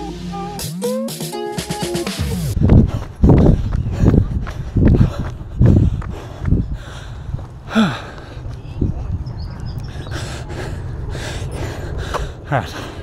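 Background music ends with a pitch sweep about two seconds in. Then a runner's heavy panting, short loud breaths about one a second close to the microphone, from hard effort at the end of a 20-minute threshold interval.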